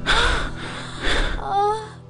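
A young woman gasping and crying out in distress, ending in a short wavering wail about a second and a half in.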